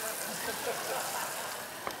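Vegetables frying in a hot pot on the stove, a steady sizzling hiss, with one short click near the end.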